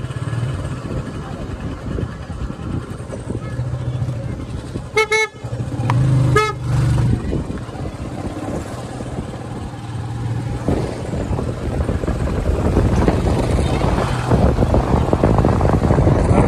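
Motorcycle engine running steadily while riding, with two short horn toots about five and six and a half seconds in. A rushing noise, like wind on the microphone, grows louder over the last few seconds.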